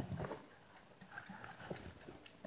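A few faint, scattered clicks and light knocks.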